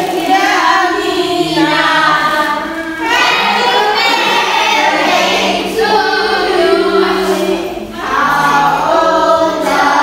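A group of schoolchildren singing together in harmony, choir-style, with held low notes beneath the voices.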